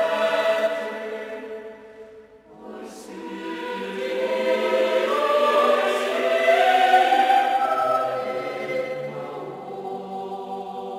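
Choir singing sustained sacred music: a held chord fades out about two seconds in, then a new phrase swells up and gradually tapers off.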